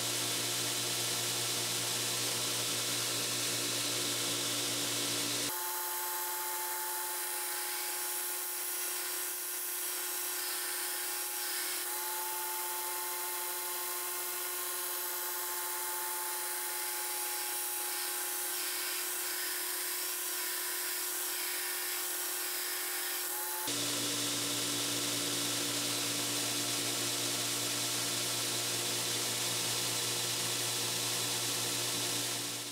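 Knife-making belt grinder running steadily while a knife blade's bevels are ground against the abrasive belt. The sound changes abruptly about five seconds in and changes back near the end.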